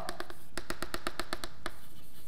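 Chalk tapping on a blackboard in a quick, even run of about a dozen sharp ticks, roughly ten a second, starting about half a second in and stopping after just over a second.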